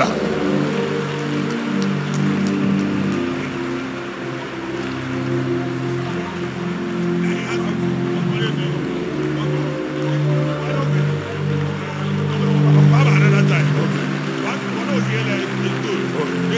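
Slow, sustained keyboard chords held under a congregation praying aloud all at once, a blur of overlapping voices with no single speaker standing out. The chords swell loudest about thirteen seconds in.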